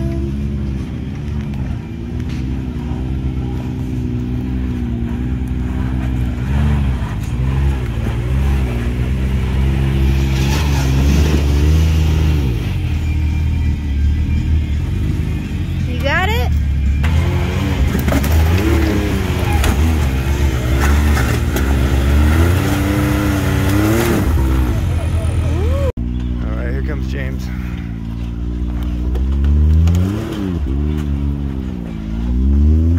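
Can-Am Maverick X3 side-by-side engines, turbocharged three-cylinders, revving up and down under throttle at crawling speed as the machines climb over rocks, with an abrupt break about 26 seconds in.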